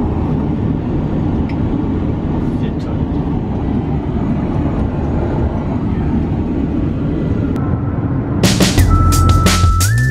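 Steady airliner cabin noise in flight, a loud low rushing hum heard inside the aircraft lavatory. About eight seconds in, electronic dance music with a heavy drum beat cuts in over it.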